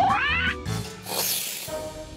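Cartoon toucan squawking as a feather is plucked from it: a short, rising yelp at the start, over background music. A brief hissing noise follows about a second in.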